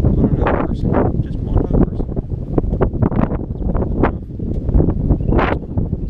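Gusty wind buffeting a handheld camera's microphone, a loud, uneven rumble, with broken fragments of a man's voice over it.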